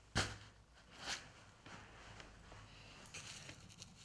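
Faint handling noise: a short knock just after the start, a softer one about a second in, and light ticks near the end as hard plastic fishing plugs with treble hooks are moved about on a cloth-covered table, over a low steady room hum.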